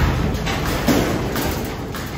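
A hard bang on a metal wall panel, which goes on shaking and ringing with a long rumbling decay rather than stopping dead.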